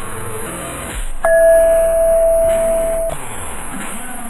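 Intro music of a video's subscribe animation, with a single long, steady electronic beep that comes in about a second in and holds for about two seconds before cutting off.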